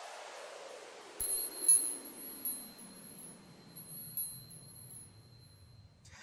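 Logo-sting sound effect: a swoosh falling in pitch, then, about a second in, a light hit and a sparkling, chime-like shimmer with a few soft ticks that fades away near the end.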